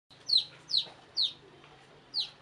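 Chicken giving three short, high-pitched calls, each falling in pitch, about half a second apart.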